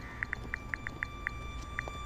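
Quiet background ambience: short, high chirps repeating irregularly, several a second, over a low hum and a faint steady whine.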